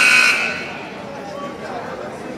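Gymnasium scoreboard horn sounding once, a short loud buzz that cuts in suddenly and fades out after about half a second, over crowd chatter.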